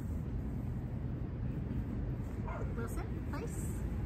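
A dog whimpering and yipping in a few short, high, wavering calls about two and a half seconds in, over a steady low rumble.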